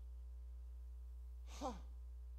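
A pause in a man's talk over a steady low hum, ended near the end by one short, breathy "huh" whose pitch falls.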